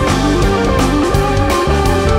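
A rock band playing live, an electric guitar line stepping through notes over bass and a steady drum beat.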